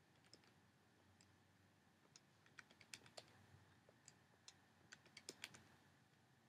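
Near silence with faint, irregular key clicks, mostly in the middle and later part: keys being tapped, as when a calculation is keyed in.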